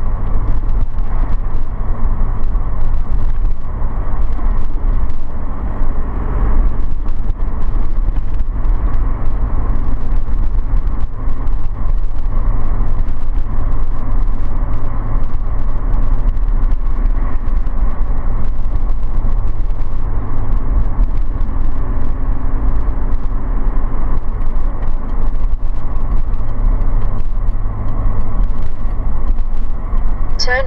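Motor vehicle driving at a steady speed on the open road: a continuous, even low rumble of engine and road noise.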